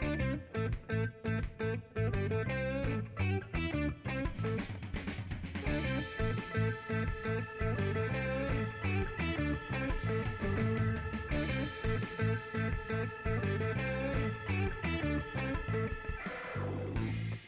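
Background rock music with guitar and a steady beat, fuller with held notes from about six seconds in.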